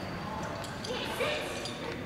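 Indistinct voices murmuring in a large, echoing hall, with a few light ticks through the middle.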